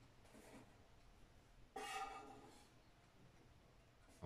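Near silence: faint scraping as a knife works cookie dough loose from a floured wooden board, with one short, louder sound just under two seconds in.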